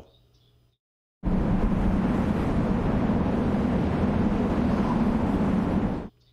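Near silence, then about a second in a steady rushing outdoor noise starts abruptly, heavy in the low end, and cuts off suddenly at the end.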